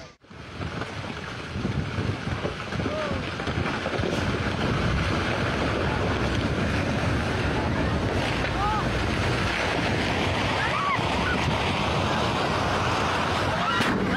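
Landslide: a steady, loud roar of rock and earth pouring down a mountainside, with wind buffeting the microphone. It starts just after a brief silence at the very beginning.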